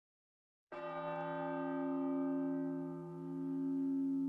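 A bell-like tone that starts suddenly less than a second in and rings on with several steady pitches, slowly swelling and ebbing in loudness.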